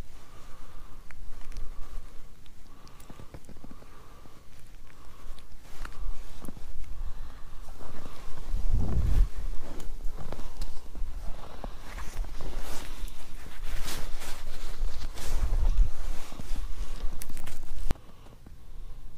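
Footsteps crunching in snow on a frozen lake, a run of short crackly steps that grows louder and denser in the second half, with a couple of heavier low thuds along the way.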